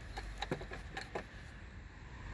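A few faint clicks and light knocks of hand-handling around a car battery and its hold-down bracket, over a low steady hum.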